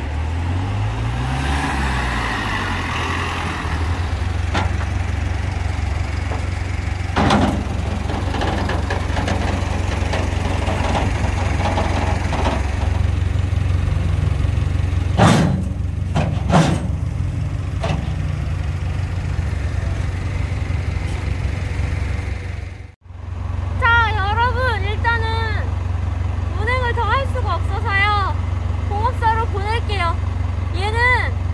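Flatbed tow truck's engine running steadily at idle while a car is loaded up its steel deck, with a few sharp metallic knocks along the way. After a brief break near the end, a wavering, warbling high sound plays over the engine.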